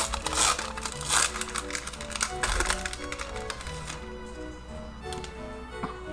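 A foil Pokémon booster-pack wrapper crinkling and tearing open in a few short crackly bursts during the first half, over background music.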